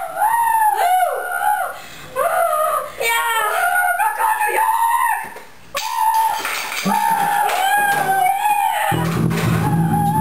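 A boys' garage-band jam: an electric bass guitar played loudly, with high, wavering wordless wailing over it. A sudden low rumble comes in about nine seconds in as the junior drum kit is knocked over.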